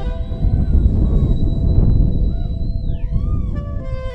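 Live jazz-fusion band playing: drums and bass underneath a high held note that swoops down in pitch near the end, followed by several short bending glides.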